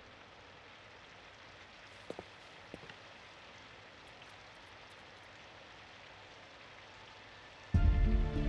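Faint steady rain, with two soft ticks a couple of seconds in. Music fades out at the start, and loud music cuts in just before the end.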